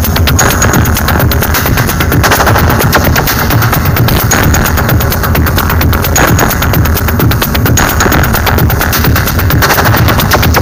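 Loud live techno with a heavy, steady bass and a fast, dense run of sharp percussive hits repeating evenly throughout.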